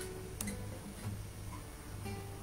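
Soft acoustic guitar background music with sparse, sustained notes. A sharp click comes about half a second in.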